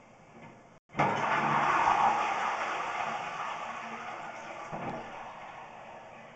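Water rushing through a drain pipe, heard through a sewer inspection camera's microphone: it starts suddenly about a second in, is loudest soon after and fades over the next few seconds.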